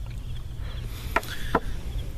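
Wine cups knocking on a wooden table: two sharp, short knocks about a second in, a third of a second apart, over a low steady hum.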